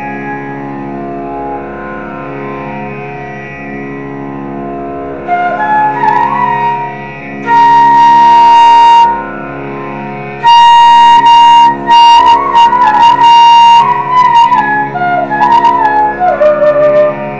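Carnatic flute playing raga Malayamarutham over a steady drone. The drone sounds alone at first; about five seconds in the flute enters, holding long high notes and then playing gliding, ornamented phrases, much louder than the drone.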